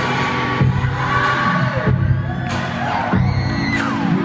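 Live amplified pop music at an arena concert, recorded from the audience: a steady beat and heavy bass under a male singer, with crowd noise and a high cry falling in pitch near the end.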